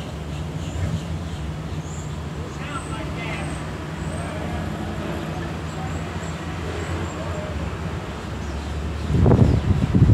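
Steady low rumble of city traffic, with faint voices and a few short high chirps above it. About nine seconds in, wind buffets the microphone, suddenly louder.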